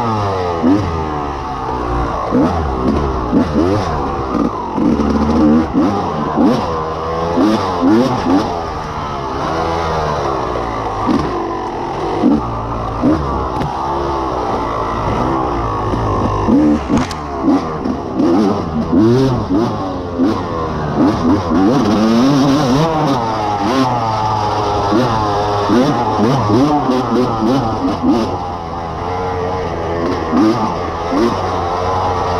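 Off-road dirt bike engine heard from the rider's helmet, revving up and down again and again as the rider works the throttle and shifts through the gears at race pace. Frequent short knocks and clatter run through it.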